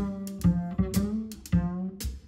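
Upright double bass played pizzicato in a jazz bass solo: about five plucked notes in a melodic line, each sounding sharply and then fading.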